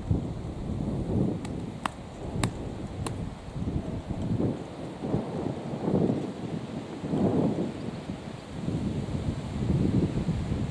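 Wind buffeting the microphone in gusts: a low rumble that swells and fades every second or two. Four faint clicks come between about one and a half and three seconds in.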